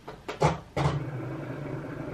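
Cricut Explore Air 2 cutting machine switched on: a couple of short clicks, then its motor starts up a little under a second in and runs with a steady hum.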